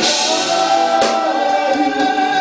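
Live rock band playing, with the singer holding one long sung note over electric guitars and drums; sharp hits mark the start and about a second in.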